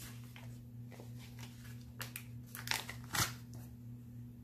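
Hands handling planner stickers and tweezers over a paper page: a few soft clicks and paper rustles, the clearest about three seconds in, over a steady low hum.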